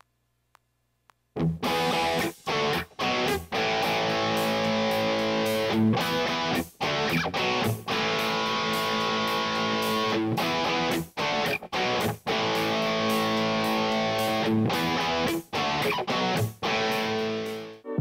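Electric guitar played through a multi-effects unit, recording a guitar part with held notes and chords. It starts about a second and a half in, after near silence, and has a few short breaks.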